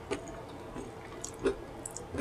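Close-miked mouth chewing with wet smacks and clicks. The loudest smack comes about one and a half seconds in.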